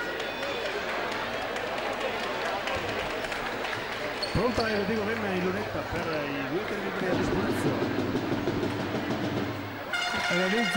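A basketball bounced a few times on a hardwood court by a player at the free-throw line, over the steady murmur of an indoor arena crowd. About four seconds in, voices rise above the hall noise.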